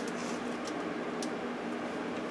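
Steady hum and hiss of running computer equipment and its cooling fans, with a few faint ticks.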